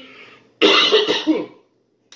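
A man coughs and clears his throat once, starting about half a second in, in a harsh burst that ends in a falling, voiced rasp.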